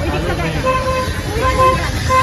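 A vehicle horn sounding three short, evenly spaced beeps, over traffic noise and crowd chatter.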